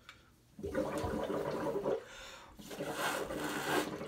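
Air blown through joined drinking straws bubbling in a bucket of foot-soaking water, in two long blows of over a second each.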